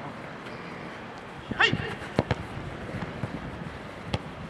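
A player's shout of "Hey!", then two sharp thuds of a football being kicked a moment apart, the loudest sounds, followed by fainter knocks of feet and ball.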